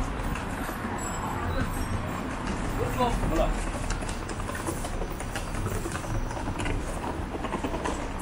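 City street ambience: a steady wash of traffic noise with indistinct voices of passers-by talking.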